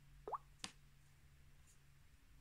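A short rising plop, a Samsung phone's touch sound, followed by a sharp click about a third of a second later.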